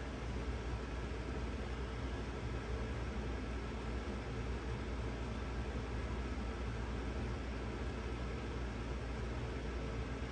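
Steady background hiss with a low hum underneath, unchanging room tone with no distinct events.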